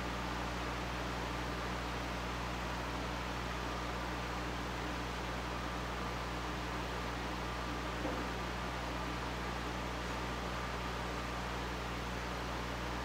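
Steady room tone: a constant hiss with a low hum from a wall-mounted air conditioner running, and a faint short tap about eight seconds in.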